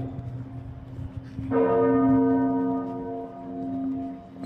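Large church bells ringing, several long tones hanging in the air. A fresh strike about one and a half seconds in is the loudest moment, then slowly fades.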